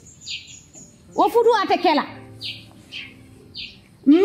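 A small bird chirping: short, high notes repeated roughly once a second, in the gaps between a woman's brief speech.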